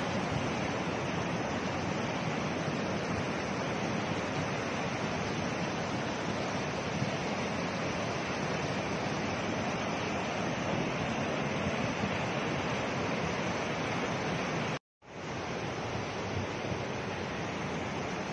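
Steady rushing of a swollen, muddy flood river, an even wash of water noise. It cuts out for a moment about fifteen seconds in, then returns.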